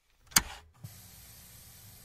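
A brief vocal 'ah', then faint steady hiss with a low hum: the recording's background noise.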